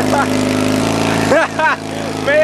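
Garden tractor's small engine running steadily as it is driven through mud, with short shouted yells over it about a second and a half in.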